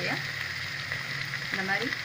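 Sliced onions, green chillies and chopped herbs frying in hot oil in a pot: a steady sizzle.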